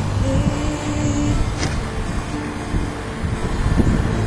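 Vehicle engine and road rumble heard from inside a moving car, steady and loud, with music playing over it.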